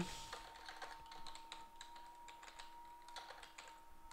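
Faint typing on a computer keyboard: a scatter of quick, irregular key clicks as an expression is typed in.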